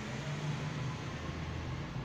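Steady low hum with an even hiss of room noise, and no distinct strokes or knocks.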